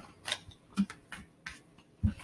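Tarot cards being handled and laid down on a cloth-covered table: a handful of short, soft taps and flicks.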